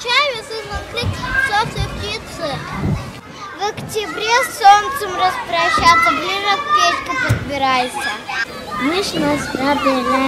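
Young children's high-pitched voices speaking.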